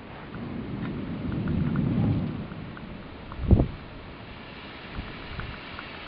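Rolling thunder rumbling: it swells for about two seconds and fades, then there is a short, sharp low thump about three and a half seconds in, with faint scattered ticks throughout.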